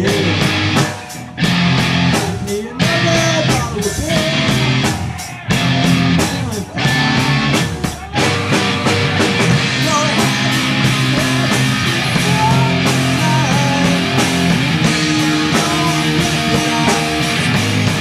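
Live rock band, electric guitars, bass guitar and drums, playing loudly; for the first eight seconds or so the band stops briefly about every second and a half, then plays on without a break.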